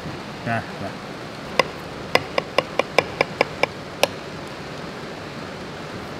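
A metal knife and fork clinking against a ceramic plate while cutting into a baked rice cake: about ten quick, ringing clicks over two and a half seconds, then stopping.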